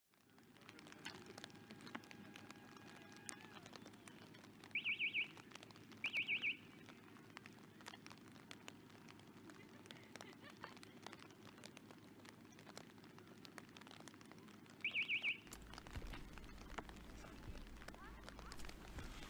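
A referee-style whistle trilled twice, about a second apart, some five seconds in, then once more about ten seconds later: the archery timing signals to step to the shooting line and then to start shooting. Faint rain patter runs underneath.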